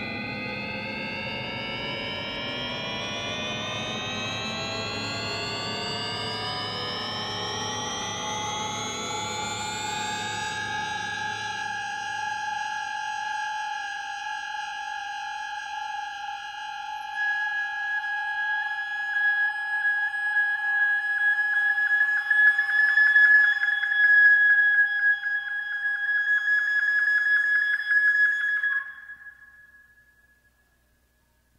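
Electronic music for flute and computer-generated tape: a cluster of tones glides upward together for about ten seconds, then settles into steady held tones. Past the middle a high wavering tone grows louder, and the music stops abruptly shortly before the end.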